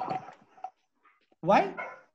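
A man's voice speaking, with a short pause in the middle and a loud, drawn-out word near the end.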